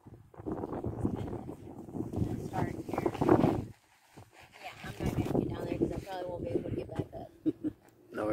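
People's voices talking indistinctly, with a brief break of near silence about four seconds in.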